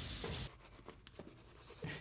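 A steady hiss that cuts off abruptly about half a second in, leaving near silence broken by a few faint clicks.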